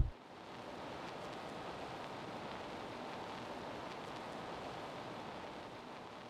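A short thump right at the start, then a steady, even hiss.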